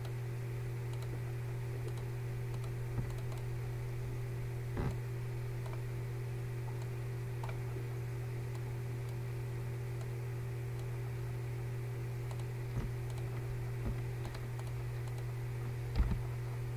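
Steady low hum with a few scattered faint clicks from computer mouse and keyboard use.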